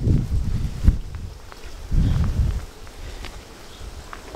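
Footsteps on a wood-chip garden path with rustling, and low rumbles of wind on the microphone, with a sharp click about a second in.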